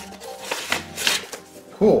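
Soft background music, with a few brief rustles of paper packaging being handled in the first second or so.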